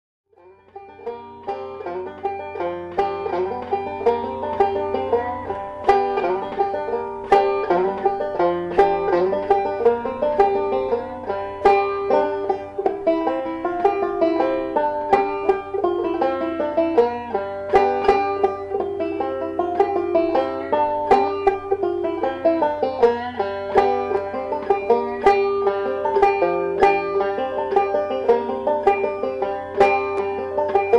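Five-string resonator banjo picked rapidly three-finger bluegrass style, in standard G tuning with the second string held at the first fret. It starts about half a second in, with a low steady hum underneath.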